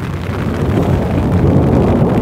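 Rain pattering on the nylon rain fly of a North Face Talus 2 tent, heard from inside the tent, with a low wind rumble; it grows a little louder about half a second in.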